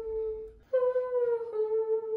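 A woman's voice singing a wordless vocal line, near to humming: a held note that steps down to a slightly lower one, the phrase repeated after a brief break.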